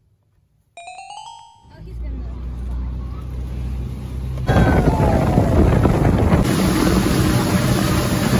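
A brief chime sound effect about a second in, then a pontoon boat under way on a lake: a low engine hum that grows, and from about halfway through loud wind buffeting the microphone over the rush of the moving boat and water.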